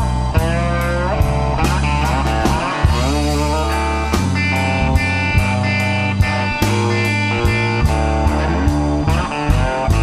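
Studio recording of a slow blues band in an instrumental passage: an electric guitar plays bent, wavering lead notes over bass and a steady drum beat, with no singing.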